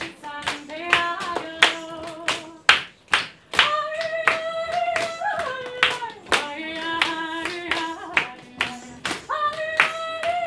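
A woman singing a folk song live, holding long notes that glide between pitches, with sharp hand claps from the audience keeping time throughout.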